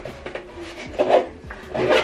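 Handling noise from a wallet being rubbed and moved about, with a few light clicks early on and a louder rub about a second in.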